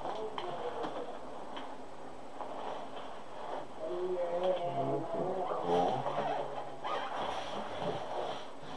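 A person's low, indistinct voice, strongest in the middle, with a few faint clicks.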